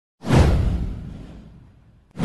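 A single whoosh sound effect for an animated intro: it hits suddenly about a fifth of a second in, with a deep low boom under a hissing sweep that falls in pitch, and fades away over about a second and a half.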